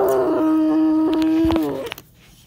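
A long howl-like cry held on one steady pitch. It glides down into the note at the start and drops off near the end, lasting nearly two seconds.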